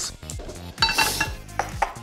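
Peanuts rattling in a metal frying pan as it is tossed, with a brief metallic ring about a second in. A few sharp knocks of a chef's knife on a wooden chopping board follow near the end.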